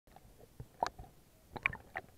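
Water gurgling and slapping around a half-submerged action camera, with a few short wet knocks; the loudest come just under a second in and again about a second and a half in.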